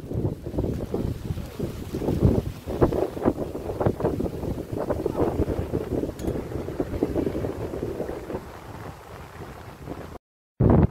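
Wind buffeting a phone's microphone in uneven gusts of low rumble, easing near the end.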